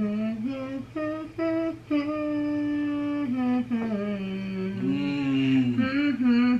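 A woman humming the melody of a Christmas song, holding each note and stepping up and down from one note to the next.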